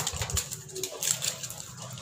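Metal house gate being unbolted and swung open, with a few short knocks near the start, then faint background noise.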